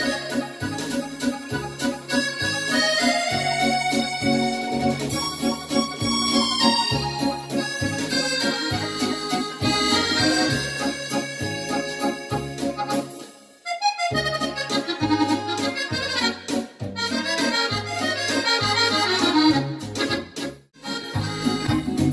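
Yamaha PSR-S775 arranger keyboard played with an accordion voice: a French musette melody over a regular, bouncing bass accompaniment. The music breaks off briefly about two-thirds of the way through, then dips again shortly before the end.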